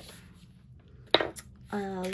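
A single short tap or click about a second in, against faint handling noise, followed by a woman's voice starting near the end.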